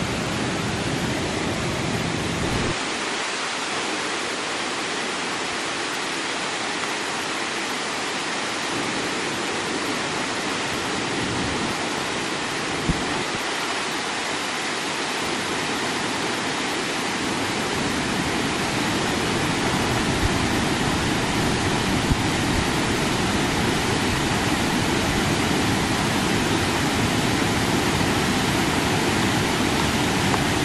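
Small waterfall pouring into a rock pool, a steady rush of falling water. The deep part of the rush fades a few seconds in and comes back in the second half.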